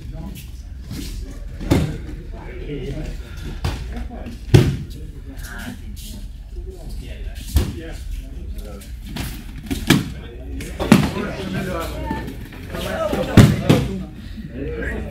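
Thuds and slaps of bodies landing on judo mats as partners are swept down with de ashi harai, about seven separate impacts, the loudest about four and a half seconds in and near the end, over background voices.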